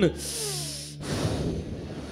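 A man drawing a heavy breath in close to a handheld microphone, a hissing rush of air lasting about a second, after a shouted phrase.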